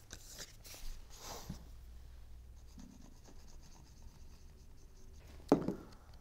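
Cardstock paper panels being handled and slid over a cutting mat: soft paper rubbing and brushing, with a few rustles in the first second or two and one brief, louder, sharp rustle or tap near the end.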